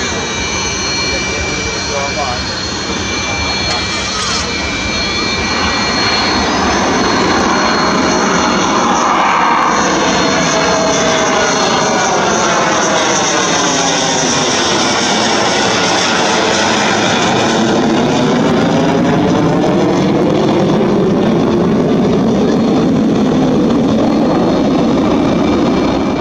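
Jet fighter flying past: a loud, steady rush of jet engine noise. Its pitch sweeps down and back up as the aircraft passes, getting a little louder after a few seconds.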